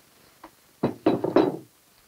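Three quick, loud knocks of a hard object on wood, close together about a second in: a handgun being set down on a wooden table.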